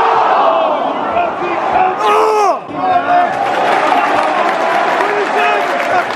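Stadium football crowd shouting and yelling together, with a loud swell of shouts about two seconds in that breaks off suddenly. Hand clapping near the end.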